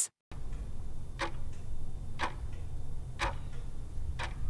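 Countdown-timer sound effect: a clock ticking once a second, three sharp ticks over a low steady hum.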